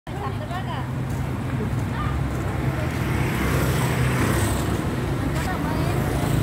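Street ambience: a steady low rumble and hum, like traffic, under scattered voices of people close by.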